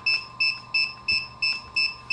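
FPV drone radio controller beeping rapidly and evenly, about three short high beeps a second, while its three buttons are held down: the signal that it is in bind mode, linking to the air unit.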